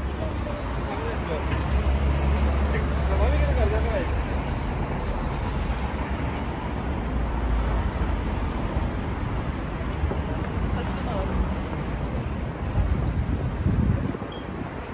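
Busy shopping-street ambience: a steady rumble of road traffic, with faint snatches of passers-by talking.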